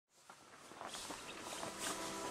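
Footsteps on a dirt path, a run of soft irregular steps that fade in from silence and grow louder.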